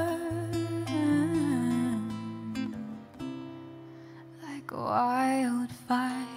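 Solo acoustic guitar played softly under a woman's singing of long, held notes. The voice drops out for a moment in the middle, leaving only the guitar, then comes back with a rising note that it holds.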